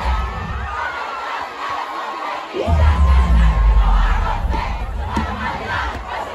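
Big concert crowd screaming and cheering. Deep bass from the sound system comes in about two and a half seconds in and is the loudest part.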